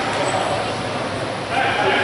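Voices echoing around a gymnasium during a free throw, with a louder drawn-out shout starting about one and a half seconds in.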